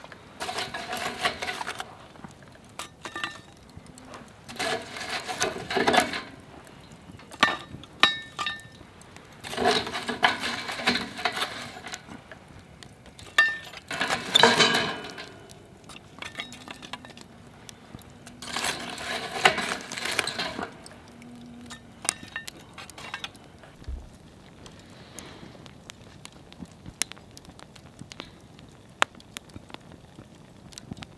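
Long metal tongs placing glowing wood coals on a cast-iron Dutch oven lid: about six bouts of clinking and scraping of metal and coals on the lid, then scattered small clicks and crackles.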